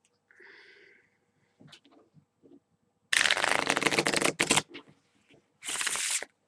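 A deck of Bicycle playing cards being riffle-shuffled: a rapid run of card flicks lasting about a second and a half, then a shorter burst near the end as the cards are bridged back together.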